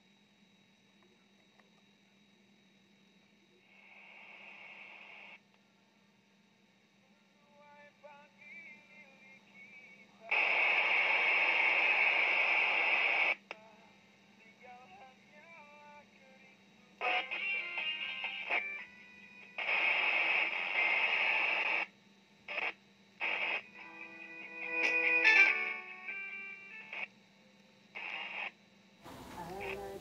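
Yaesu FT-1802 FM transceiver's speaker sounding as it is tuned across channels: bursts of hiss that switch on and off abruptly, with stretches of received voice and tones between them, over a faint steady hum. The receiver is working normally again after repair.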